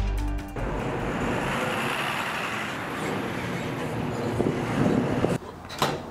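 Background music cuts off about half a second in, giving way to steady road traffic noise, with a sharp click near the end.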